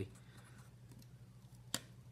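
A single short, sharp click near the end as a small part is handled on a carbon-fibre quadcopter frame while the ESC board is fitted onto its standoffs, over a faint steady low hum.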